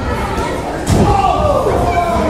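A single heavy thud on the wrestling ring about a second in, with voices shouting around it.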